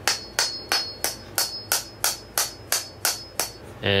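Small hammer tapping a metal staple into the wooden base plug of a powder horn: about a dozen light, evenly spaced taps, roughly three a second, with a faint metallic ring after some of them.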